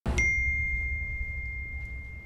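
A single high ding of a smartphone message notification, ringing on and slowly fading. Beneath it, a deep low rumble starts at the same moment and fades away.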